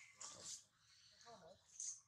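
Faint, short whimpering calls from a baby long-tailed macaque, a few separate cries with wavering pitch, with brief high raspy sounds in between.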